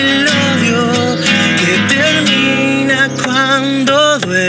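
A man singing with vibrato over a strummed nylon-string classical guitar.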